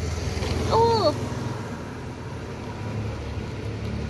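Steady low rumble of a vehicle engine running nearby, with a woman's brief "oh" about a second in.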